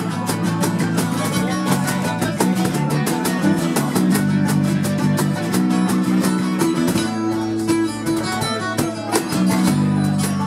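Live folk-punk band playing an instrumental passage: strummed acoustic guitars over a bass guitar line and a steady beat on a cajon.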